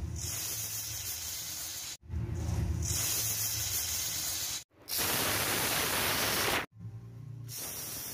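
Pressure cooker weight valve hissing as steam escapes, spitting frothy dal foam around the weight. The hiss comes in several sections that stop and start abruptly, loudest about five seconds in.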